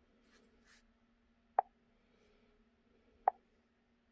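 Two short, sharp clicks about 1.7 seconds apart as the touchscreen of a Launch X431 PROS Mini diagnostic tablet is tapped to scroll its menu, over a faint steady hum.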